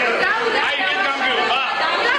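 Several people talking over one another at once, a tangle of overlapping voices.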